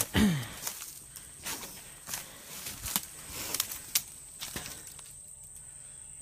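Footsteps on dirt and leaf litter along a woodland path, coming irregularly. A steady high-pitched insect sound runs behind them.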